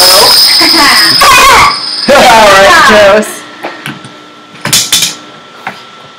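Excited voices shrieking and shouting over a game win, loud and in two bursts in the first three seconds. After that come a few sharp clicks or knocks.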